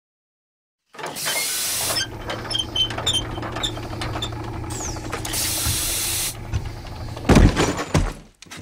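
Industrial sound effects: a steady machine hum that starts about a second in, with scattered clicks and clanks and two bursts of steam hiss. A heavy low thump near the end is the loudest sound.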